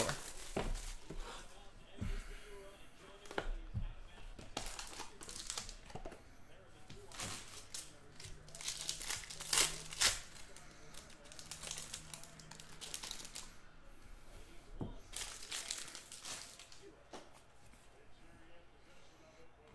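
Plastic shrink wrap being torn off a trading-card box and crumpled in the hands: irregular crinkling and crackling throughout, with a few sharper tears.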